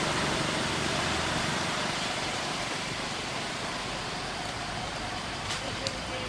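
Steady rushing outdoor noise, easing slightly, with two short sharp clicks near the end.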